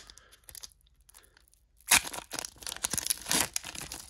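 Foil wrapper of a Pokémon card booster pack being torn open by hand: one sharp, loud rip about two seconds in, followed by a run of crinkling from the foil.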